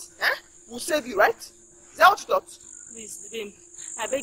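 Steady high-pitched drone of crickets, with a faint steady hum beneath it. Short bursts of voice break in three or four times.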